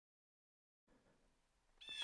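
Near silence: dead silence at first, then faint hiss, with a brief faint high-pitched sound just before the end.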